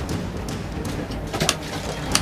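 A sturgeon spear driven down through the ice hole into the water, with a sharp splash and clatter about one and a half seconds in, over a steady low rumble.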